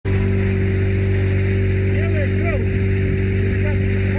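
A steady, unchanging engine drone with a constant low hum, and faint voices over it about halfway through.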